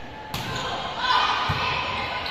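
A volleyball struck during a rally, with one sharp hit about a second and a half in, in a reverberant gymnasium with spectators' voices around it.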